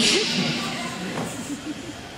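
A chair dragged a short way across a stage floor, a scraping hiss that starts at once and fades over about a second, with faint voices underneath.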